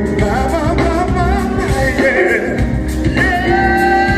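Live soul-pop band playing while a female and a male singer sing a duet, their voices gliding up and down over keyboards, bass and drums.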